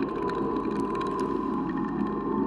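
Experimental noise recording: a dense, crackling low drone with a thin steady tone held above it and scattered faint clicks.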